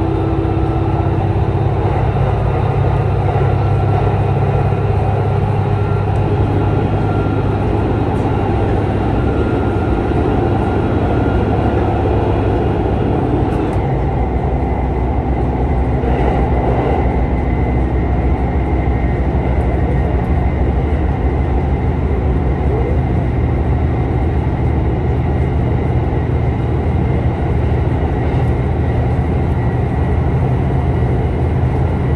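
Cabin noise of an ET122 series diesel railcar running along the line: a steady low engine drone under the rumble of wheels on rail. About halfway through, the drone's pitch shifts, with a new steady hum.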